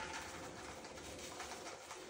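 Faint sizzling of raw peanuts as they are poured into a skillet of hot oil.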